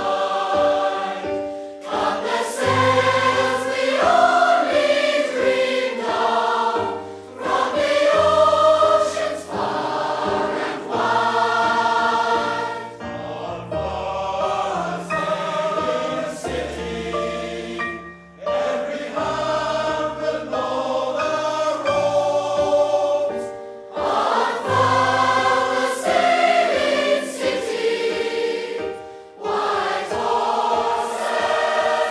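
A large mixed choir of adults and children singing together, in phrases of about five seconds with short breaks between them.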